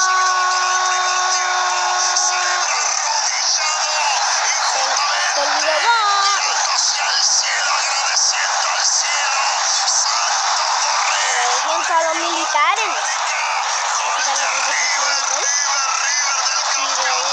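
Football match television audio: a dense, steady stadium crowd noise with a commentator's voice calling out over it at intervals, opening with one long steady held tone. The sound is thin, with no bass.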